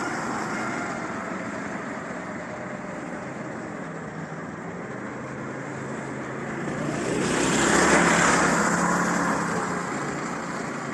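Go-kart engines running on the track, with one kart passing close about eight seconds in, when the sound swells and then fades.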